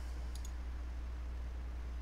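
Two quick computer mouse clicks about a third of a second in, over a steady low hum.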